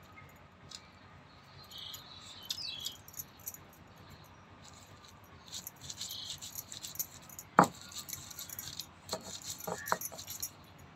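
Dry grain rattling in a stone mortar, then crunching and scraping under a stone pestle as it is pounded and ground, with one sharp loud knock of stone about three quarters of the way through and a few lighter knocks near the end.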